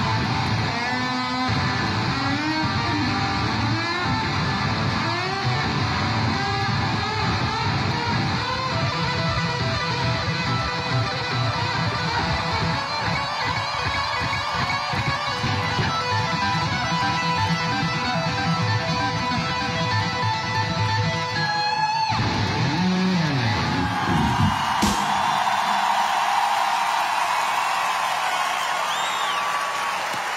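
Live electric guitar solo at stadium volume: fast runs of lead notes that break off about three quarters of the way through into a long held note.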